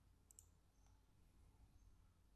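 Near silence with one faint computer-mouse click about a third of a second in.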